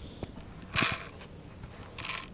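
Light handling of a Crosman Pumpmaster 760 air rifle's bolt as it is worked back to pick up a BB: a small click, then a short rustle about a second in.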